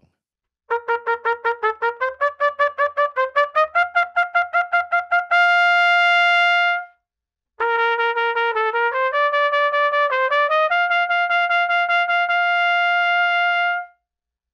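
Trumpet playing an articulation exercise: a rising run of short, detached staccato notes, about five a second, ending on a long held note. After a pause of about half a second, the same rising figure comes again tenuto, each note held its full length, ending on another long held note.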